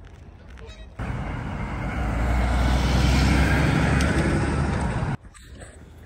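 A loud, steady rushing noise with a deep rumble starts suddenly about a second in, swells, and cuts off abruptly about a second before the end.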